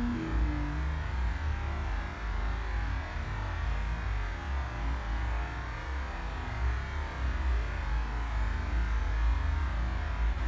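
Steady low rumble of wind buffeting the microphone, with a faint hiss above it.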